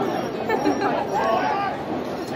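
Crowd chatter: many people talking and calling out at once, with no single voice standing out.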